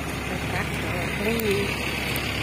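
Motor scooter engine running steadily under way, with road and wind noise, and a brief voice about halfway through.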